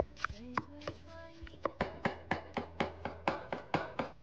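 A wooden pounding stick mashing steamed sweet potato and sugar in an enamel basin, a run of strokes that settles into about four a second in the second half.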